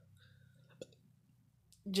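Near-quiet room tone with one short, sharp click a little under a second in, a handling noise from the phone or the knife being moved close to it. A man's voice starts just before the end.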